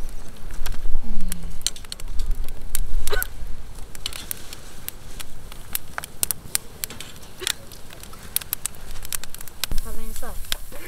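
Firewood crackling and popping in an open wood fire under a wire grill grate, with sharp, irregular pops over a low rumble of flame.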